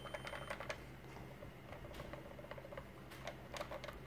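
Faint light clicks and ticks of an ATP test swab being rubbed over a plastic elevator call button, a quick run at first and another few near the end.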